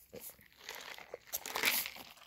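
Irregular rustling and crinkling handling noise, loudest about one and a half seconds in. It comes from a hand moving the water bottle and brushing cloth close to the microphone.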